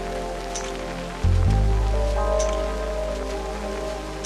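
Slow lofi hip hop: soft held keyboard chords over a deep bass note that comes in about a second in, with a sparse high tick of the beat about every two seconds. A steady patter of rain runs under the music.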